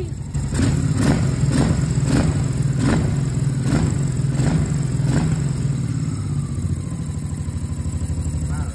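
1988 Honda Shadow VT1100's V-twin engine running steadily on its first start after a carburettor rebuild. It has just fired up and is idling. For the first five seconds a sharp crack breaks through the running about every half second to second.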